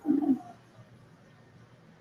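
A woman's brief hummed "mm" in the first half second, then near silence: a pause between words.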